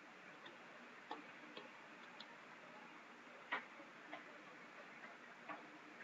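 Faint, irregularly spaced keystrokes on a computer keyboard, about half a dozen clicks over a steady background hiss, as a short line of code is typed.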